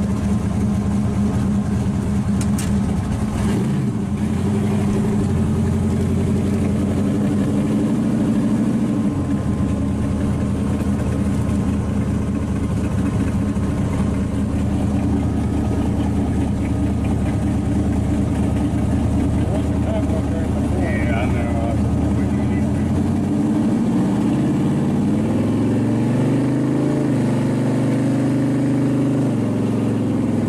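Supercharged V8 of a hot rod running while being driven, heard from the open cockpit behind the blower. The engine note steps down a few seconds in and again near 9 s, then rises and falls over the last several seconds as the car accelerates.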